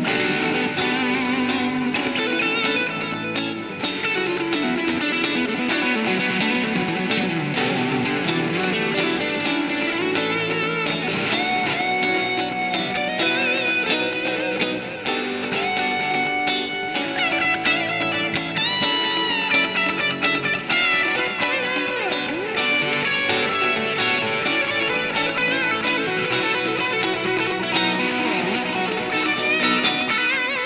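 Several layered electric guitar tracks from a Nash S-57 Medium Aged, a three-single-coil, maple-neck guitar, played back through a Kemper amp profiler: funky rhythm strumming with melodic single-note lines in a city-pop part.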